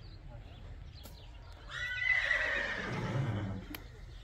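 A horse whinnies once, a single call of about two seconds that starts high and falls away with a lower sound near its end. The horses are restless because one of them has been led out of the stable.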